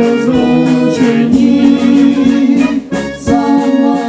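A woman and a man singing a song together through microphones over a Czech brass band (dechovka), with long held notes. The sound drops briefly just before the last second, then the band comes back in on the beat.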